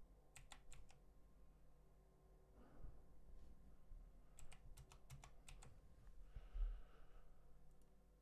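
Faint computer keyboard typing: a quick run of key clicks right at the start and a second run about four and a half seconds in, with a low bump a little later.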